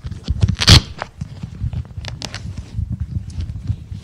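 Handling noise close to the microphone: irregular knocks, rustles and dull thumps, with one loud sharp rustle or bump about three-quarters of a second in.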